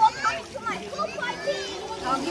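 Several children's voices calling and chattering at play, overlapping, with a short loud cry right at the start.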